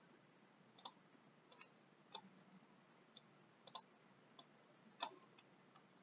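Faint computer mouse button clicks, about one a second, several of them in quick pairs, as raster layers are selected and dragged.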